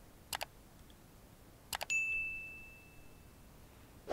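Two quick pairs of computer mouse clicks. Right after the second pair comes a single high electronic ding that fades away over about a second and a half.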